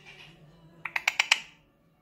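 A quick run of five sharp clicks about a second in, made by an Alexandrine parakeet clicking its beak.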